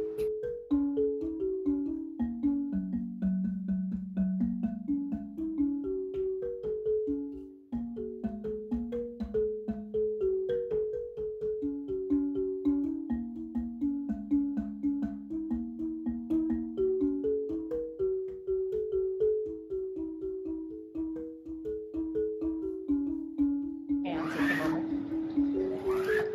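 Marimba music: a continuous run of mallet-struck notes, each ringing briefly, with a short break about eight seconds in.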